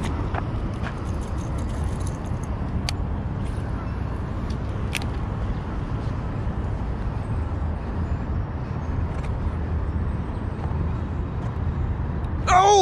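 Steady low rumble of distant city road traffic, with a few faint clicks.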